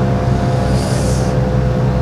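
Steady engine drone of road-works machinery running close by, with a short hiss about a second in.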